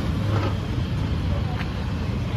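Steady low rumble of street traffic, with faint voices of people talking nearby.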